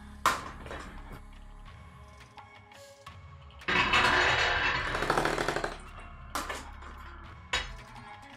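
Background electronic music with steady bass, a louder, dense, rattling stretch in the middle and a few sharp knocks.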